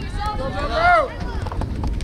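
Several people shouting across a soccer field, with one loud, high shout just before a second in, over wind rumbling on the microphone.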